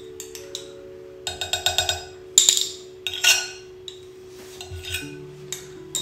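Soft background music holding a few steady notes, with a metal spoon clinking and scraping against a small ceramic bowl: a quick run of light taps, then two sharper clinks a little after two and three seconds in.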